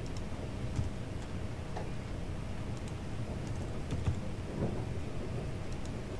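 A few scattered keystrokes on a computer keyboard, over a steady low hum of room noise.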